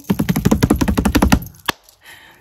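Hands drumming rapidly on a surface as a mock drum roll, about eighteen taps a second for over a second, then a pause and one sharp final slap.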